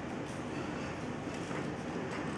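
Steady rushing background noise, with a faint snip of small scissors cutting paper about one and a half seconds in.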